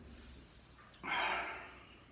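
A man's short, forceful breath, a single puff of air about a second in, while he eats.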